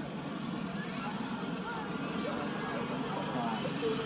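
Outdoor ambience: faint, indistinct voices of people chatting in the background over a steady low hum of noise.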